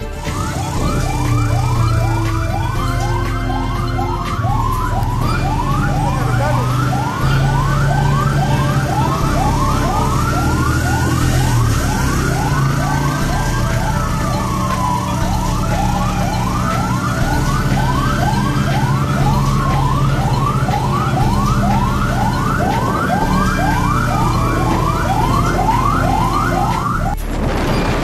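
Police siren sounding continuously: a fast yelp of about three rising sweeps a second overlapping a slower rising-and-falling wail, over a low engine hum. It cuts off suddenly near the end.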